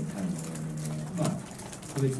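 A man's voice holding a long, low, level hesitation hum, like a drawn-out "eh" or "mm" while he thinks. It is broken briefly just past a second in.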